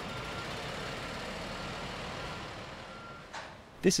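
Steady rumble and hiss of vehicles, with several faint short high beeps from a reversing alarm. It fades out shortly before the end.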